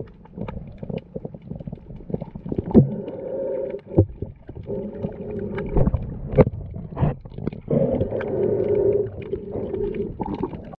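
Muffled underwater sound: a murky rumble of moving water with irregular knocks and clicks scattered through it.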